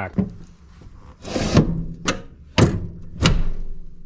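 Metal clunks from a van bench seat's base and a loose floor track being handled on the van's metal floor: a short scrape about a second in, then three sharp knocks under a second apart.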